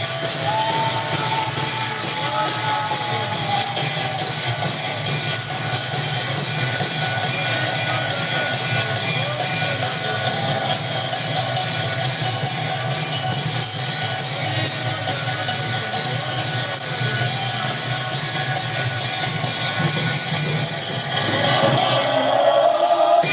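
Devotional kirtan music: metal hand cymbals (kartals) jingling continuously over a khol drum, with faint voices singing.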